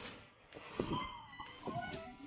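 Faint background music: a few quiet held notes.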